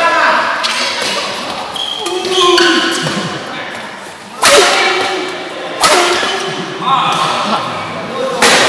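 Badminton racket strikes on the shuttlecock during a doubles rally: two loud sharp smashes about a second and a half apart and a lighter hit after, each echoing in the large hall. Shouts from players and onlookers run alongside.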